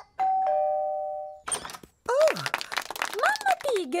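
Two-tone doorbell chime: a higher ding, then a lower dong, both ringing on and fading out about a second later.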